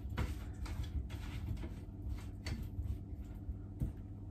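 Hands tossing oiled, parboiled potatoes with herbs in a ceramic roasting dish: soft, irregular squishes and light knocks, with a sharper knock near the end.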